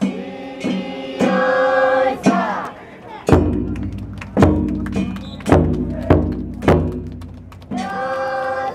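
Festival music: a large taiko drum struck heavily, roughly once a second from about two seconds in, with a deep boom after each stroke, over a group of voices chanting.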